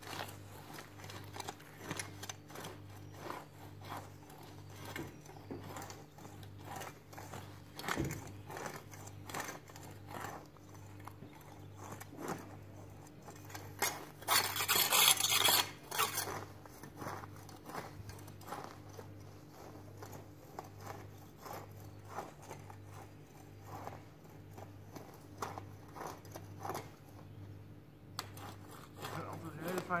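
Long-handled garden hoe scraping and chopping through soil and weeds in a run of irregular scrapes and scratches, with a louder noisy stretch of about two seconds midway. A steady low hum that pulses about once a second sits underneath.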